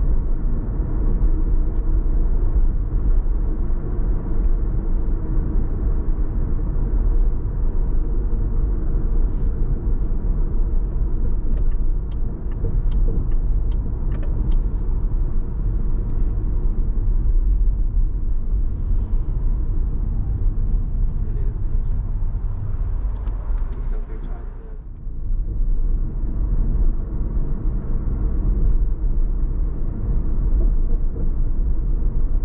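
A car driving on city streets: a steady low rumble of tyre and engine noise, with a short run of light, evenly spaced ticks about halfway through and a brief dip in level near the end.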